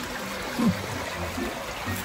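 Shallow creek flowing steadily, a constant hiss of running water.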